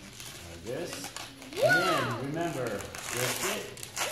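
Voices in a small room, with the rubbing and squeaking of a latex modelling balloon being twisted into a balloon animal.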